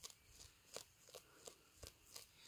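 A bare-nosed wombat cropping and chewing short grass close to the microphone: faint, crisp crunches and clicks at an uneven pace, about six in two seconds.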